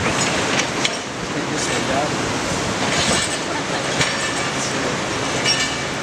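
Hydraulic demolition crusher on an excavator working concrete rubble and reinforcing steel: continuous grinding and scraping with many sharp cracks and a couple of brief metallic squeals.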